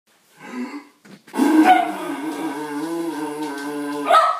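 A man's voice droning a long, low, steady tone through a cardboard paper towel tube, with a short toot about half a second in and the long drone starting a little over a second in.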